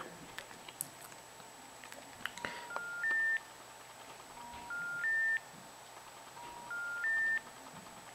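BlackBerry Bold 9650 playing a three-note rising intercept tone through its speaker, three times about two seconds apart, with a few faint clicks before the first. It signals that the call cannot go through: with no network, the phone allows emergency calls only.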